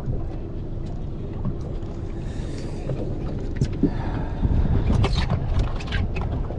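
Wind buffeting the microphone over a steady low rumble on a small boat on open water, with a few light clicks and knocks in the second half.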